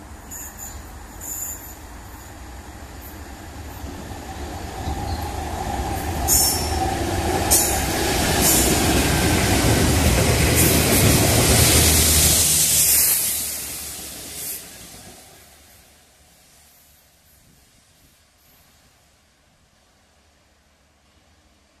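Freightliner Class 66 diesel locomotive and its Network Rail rail head treatment wagons passing through a station. The diesel rumble and wheel noise grow louder, with a couple of brief high-pitched sounds as it nears, are loudest as the train goes by, then fade away over the last few seconds as it runs off down the line.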